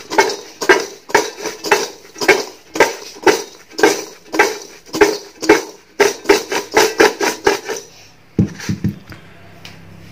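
Diced raw green mango pieces tossed in a metal bowl by hand, the pieces sliding and rattling against the sides in rhythmic strokes about twice a second as they are mixed with salt. The strokes quicken, then stop about eight seconds in, with a couple of last knocks of the bowl.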